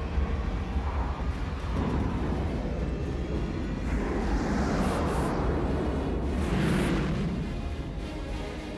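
Film soundtrack of a spacecraft in flight: a steady deep rumble under the orchestral score, with two swelling roars, one about four to five seconds in and one near seven seconds.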